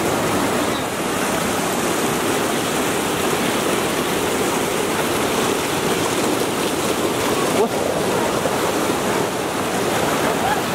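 Swollen mountain river in spate, white water rushing over boulders in a loud, steady, unbroken noise.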